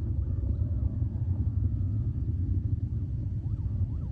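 Soyuz-FG rocket's engines during first-stage flight, heard as a steady low rumble.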